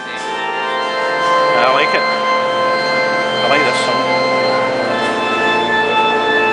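Organ holding sustained chords, swelling up over the first second.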